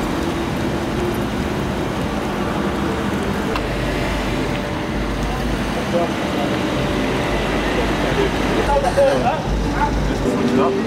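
A Rolls-Royce sedan moving slowly and pulling up, heard as a steady low rumble of engine and tyres under traffic noise. Voices come in near the end.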